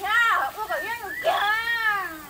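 A woman's voice speaking Hmong, high-pitched and animated, in quick rising and falling phrases.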